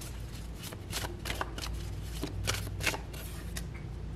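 A deck of tarot cards being shuffled by hand: a steady run of irregular soft clicks and rustles as the cards slide and tap together.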